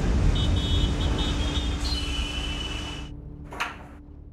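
Busy city road traffic: the rumble of many engines with high steady tones sounding over it, fading out and stopping about three seconds in. Near the end comes a single short sharp knock.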